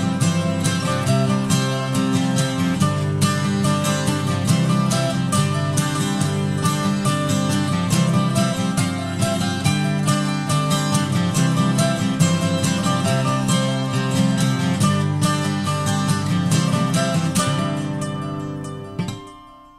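Acoustic guitar played at a steady, even rhythm with no singing: an instrumental passage of an English folk song.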